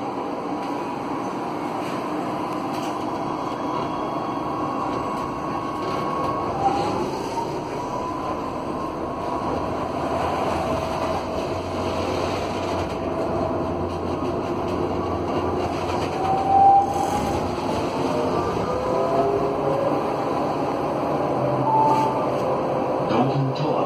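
Inside a GT8N low-floor tram moving off and gathering speed: the original GTO traction inverter driving its four Alstom motors gives a whine of several tones that rise in pitch in steps, over a steady rumble of wheels on the rails. A brief louder bump comes about three-quarters of the way through.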